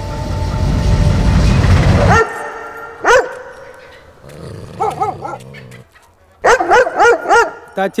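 Dogs barking in short bursts: a single bark about three seconds in, a few more around five seconds, then a louder run of about four barks near the end. Before the barking, a loud, deep rushing noise fills the first two seconds and cuts off suddenly.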